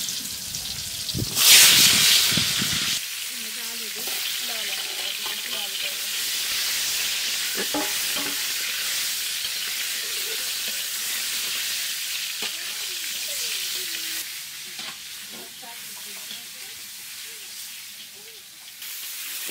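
Pointed gourds frying in hot oil in a metal karahi, a steady sizzle. It surges loudly about a second and a half in, then settles, and eases off near the end.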